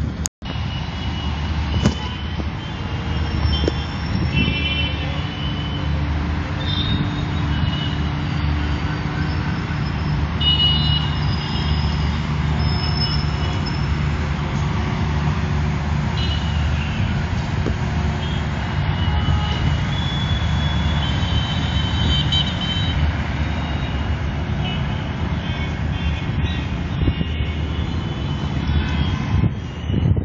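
Steady rumble of city traffic with scattered faint horn toots; the sound cuts out briefly just after the start.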